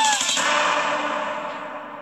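The last held sung note of a pop song ends just after the start, and the music's closing wash fades out steadily over the next two seconds.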